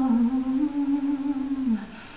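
Female voice singing a slow, wordless melody in long held notes that step up and down, then slides down and breaks off near the end.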